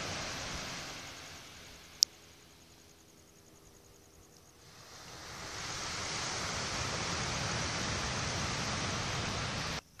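Wind rushing over the microphone, easing off for a few seconds and then rising again and holding steady, with a single sharp click about two seconds in. The noise cuts off suddenly near the end.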